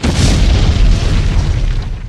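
A deep, loud boom sound effect that hits suddenly and fades away over about two and a half seconds.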